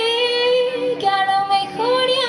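A woman singing live into a microphone, holding one long note for about a second, then moving up to a higher note and back down near the end.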